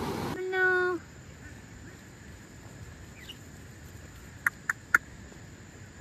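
Rushing river water that cuts off within the first half-second, followed by a single held call; then quiet outdoor ambience with a faint bird chirp and three sharp clicks in quick succession about four and a half seconds in.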